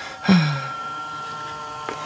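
Motorised TFT screen mechanism of a Caliber RMD579DAB-BT single-DIN car radio retracting the folded screen into the unit. It opens with a clunk a quarter second in, runs as a steady whine, and stops with a click near the end.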